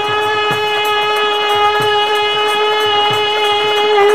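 A male Baul folk singer holding one long, steady sung note, with drum strokes beating underneath.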